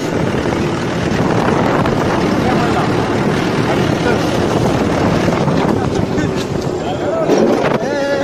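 Tractor running as it drives along a dirt farm track, heard from on board as a steady, even noise, with wind buffeting the microphone.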